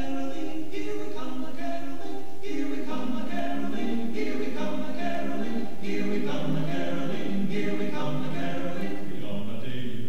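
Chamber choir of mixed voices singing a cappella, several parts moving together in held chords.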